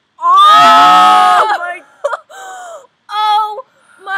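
A girl's loud, drawn-out cry of disgust lasting about a second and a half, followed by two shorter vocal sounds, in reaction to the smell of beef and gravy baby food.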